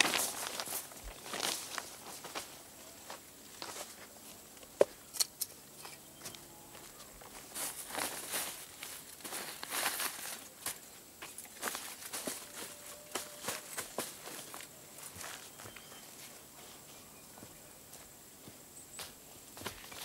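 Black plastic sheeting rustling and crinkling as it is handled and stretched over the hose, with irregular knocks of bricks being set down on it; one sharp knock about five seconds in.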